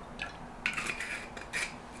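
A knife stirring hot chocolate in a ceramic mug: a few short, separate strokes of the blade scraping and clinking against the mug's inside.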